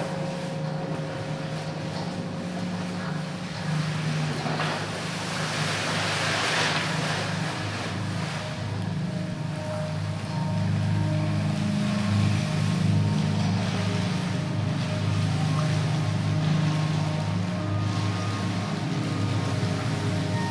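Live electroacoustic drone music: a steady low hum, with a wash of hiss that swells around a quarter of the way in and a few faint high held tones. The low drone grows fuller about halfway through.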